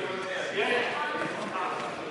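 Indistinct voices echoing around a sports hall, with light knocks from a badminton rally of shuttlecock hits and players' feet on the court.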